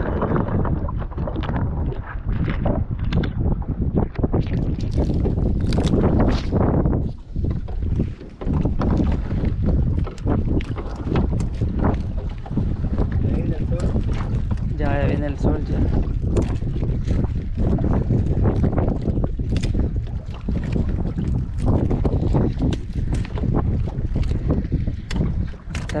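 Wind buffeting the microphone over open water, with a steady low rumble and many small knocks and rustles as a nylon trammel net is hauled by hand into a small boat.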